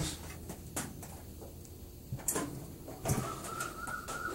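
A few light clicks and knocks from a chrome-plated car radiator grille being handled and turned over on a towel. In the last second a thin, steady whistle-like tone comes in.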